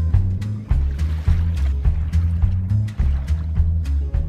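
Background music with a stepping bass line and a steady percussive beat.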